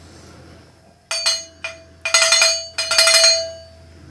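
A live-stream alert sound effect: a string of bright, glassy chimes over a held ringing tone, starting about a second in and fading after about two and a half seconds, signalling that a super chat has come in.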